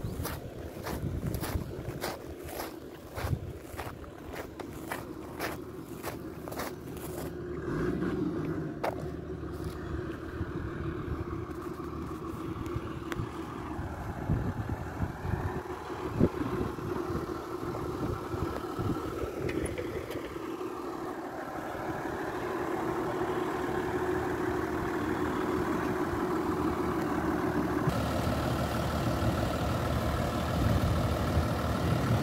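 Minibus engine idling with a steady hum. During the first seven seconds, regular crunching steps on gravel come about twice a second.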